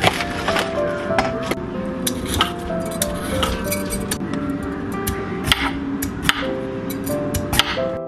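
Chef's knife chopping on a wooden cutting board, then a vegetable peeler stroking down a carrot: sharp, irregular knocks several times a second over steady background music.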